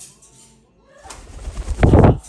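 African grey parrot flapping its wings as it takes off from its perch: a rush of wingbeats that builds over the second half and is loudest near the end.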